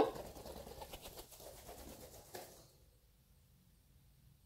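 Faint bird sounds in a small room, fading to near silence about two-thirds of the way through.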